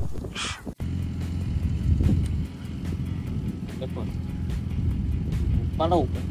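A motorcycle engine idling steadily with a low, even hum.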